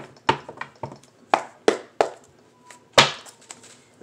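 A tarot deck being handled on a table: about six sharp taps and knocks with short quiet gaps between, the loudest about three seconds in.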